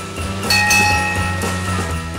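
A bell struck once about half a second in, ringing on and slowly fading, over a steady low musical drone.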